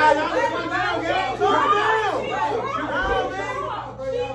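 A group of people talking over one another: overlapping chatter with no single voice standing out.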